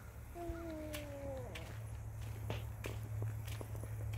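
Footsteps on outdoor ground as a person walks, a few scattered steps, over a steady low hum. About half a second in, one short call lasting about a second falls in pitch.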